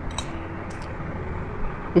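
Steady low background noise with a faint steady hum, and a few soft clicks in the first second.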